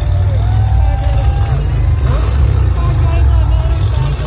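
Motorcycle engine running loudly, heard distorted through an overloaded phone microphone, with crowd members shouting over it.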